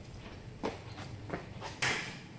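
Footsteps on a hard floor, a few separate steps, with a louder, sharper knock near the end, over a steady low hum.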